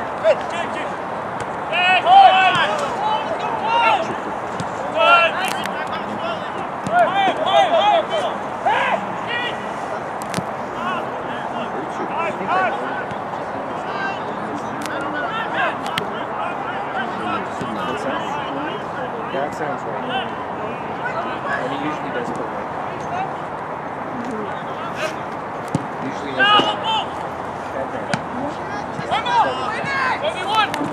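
Shouting voices of players and onlookers at an outdoor soccer match, their words not clear, over a steady background of crowd and outdoor noise. The shouts come mostly in the first several seconds and again near the end, with scattered short sharp knocks.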